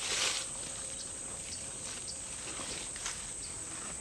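A steady, thin, high-pitched insect drone, with a short rustle of steps through grass and leaves at the very start and a few faint ticks after it.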